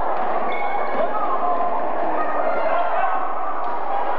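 Spectators and players calling out and talking over one another in a gymnasium during a basketball game, with a basketball bouncing on the court a few times.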